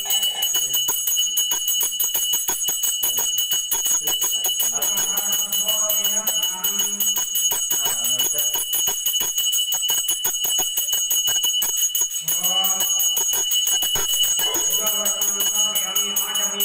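A puja bell rung rapidly and without pause, its high ringing tones held throughout. A voice chants twice over it, about five and twelve seconds in.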